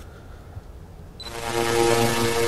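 Electric buzzing sound effect: a steady electrical hum with crackling hiss, starting suddenly just past a second in, like current arcing.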